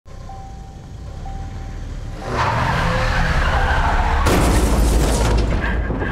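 A car in a seatbelt crash test: its noise swells and grows heavy about two seconds in, then a little past four seconds comes a sudden loud crash with a deep boom that dies away over a second or so.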